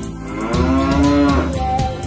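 A cow mooing once, one long call that rises and then falls in pitch, over a children's song backing track.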